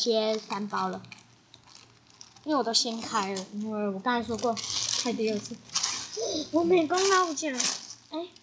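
Thin plastic wrapper around a squishy toy crinkling as it is handled and pulled open, crackling most in the second half, alongside a woman talking.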